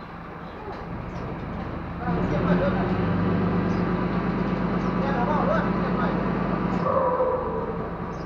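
Diesel engine of a truck-mounted hydraulic crane running, revving up about two seconds in to drive the crane and dropping back near the end, with workers' voices over it.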